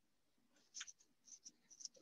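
Near silence, with a few faint, light clicks in the second half.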